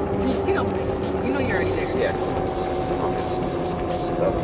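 Golf cart driving along at a steady speed: a constant hum with a couple of steady higher tones from its drive, over a low rumble of tyres and wind.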